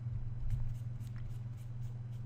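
Steady low hum with faint scratching and light ticking from hand movement at a desk, and a soft low thump about half a second in.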